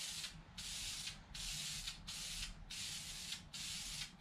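Aerosol spray can of wrinkle-finish paint hissing in short passes, each about half a second to a second long, with brief breaks between them as a heavy coat goes onto a steel bracket.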